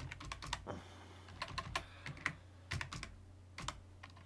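Typing on a computer keyboard: several short runs of keystrokes separated by brief pauses.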